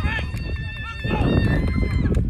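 Voices of people on and around a football field calling out, over a low rumbling noise that grows louder about a second in.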